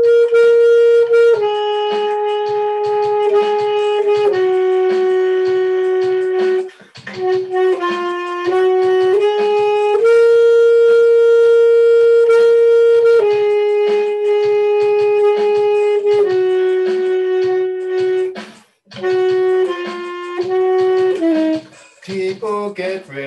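Saxophone playing a slow melody of long held notes, stepping down in pitch by phrases, over a backing track with a light beat. The melody breaks off briefly for breath about a third of the way in and again near the end.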